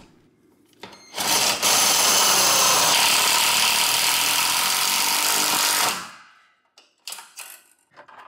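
Cordless drill driving a self-drilling screw into a garage door's steel roller bracket: a short blip about a second in, then a steady run for nearly five seconds that winds down.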